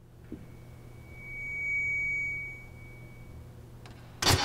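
A single high, steady electronic tone swells to its loudest about two seconds in and then fades away, over a low steady hum: a sustained note of the film's soundtrack.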